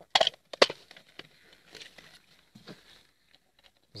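Plastic cover of a PM/5 water-pump pressure switch being pressed back onto its housing by hand: two sharp plastic clicks within the first second, then a few fainter knocks and rattles.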